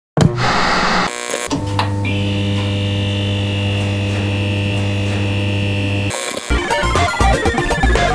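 Produced intro sound: a short burst of TV static, then a steady electric hum with a high whine under it as the neon-style logo glows. About six and a half seconds in, electronic video-game-style music starts with a falling pitch sweep.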